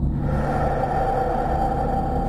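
Dramatic background score: a low, steady rumbling drone, joined just after the start by a sustained, held higher tone.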